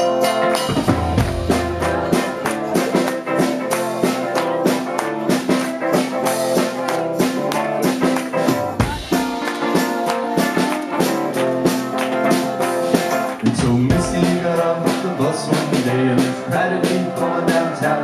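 Rock band playing live: electric guitar and drums with a tambourine shaken over a steady beat.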